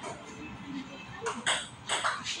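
Table tennis ball striking paddles and the table during a rally: three sharp clicks in the second half, the last two about half a second apart.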